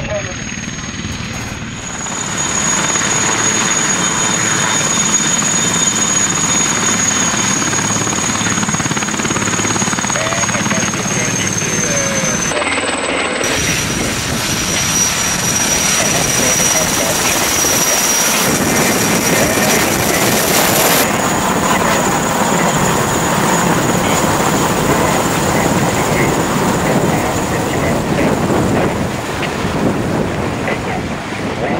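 Military transport helicopter running close by, its turbines giving a steady high whine over the dense rush of the rotor. The sound changes abruptly twice where the footage is cut.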